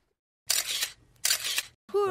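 Two short bursts of hissing noise, about three-quarters of a second apart, after a moment of dead silence.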